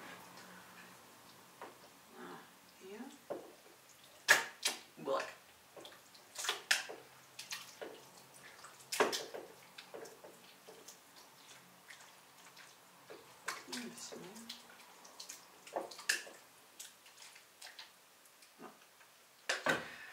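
Wet paper pulp being scraped out of a stainless-steel food-processor bowl with a plastic spatula and dropped into a plastic tub: irregular sharp knocks and scrapes of the spatula against the bowl, with soft wet plops of pulp.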